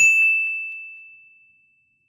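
A single bright bell-like ding sound effect, struck once on one clear high tone that fades away over about a second and a half.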